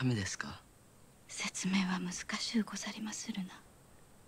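Speech only: soft, hushed dialogue. A short laugh at the very start, then a woman speaking quietly for about two seconds.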